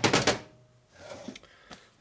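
Camera handling noise: a brief loud burst of rustling and clicks as the knitted sweater brushes the microphone while the camera is moved. It then falls quiet, with a couple of faint clicks later on.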